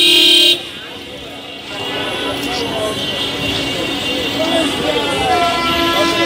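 A vehicle horn honks once, loud and about half a second long, at the start. It gives way to busy street noise with the voices of passers-by.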